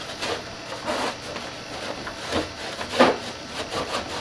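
A cloth wetted with wax and grease remover wiping over a fiberglass snowmobile hood in irregular rubbing strokes, with one louder stroke about three seconds in. It is a second wipe to clear sanding dust before a wrap is applied.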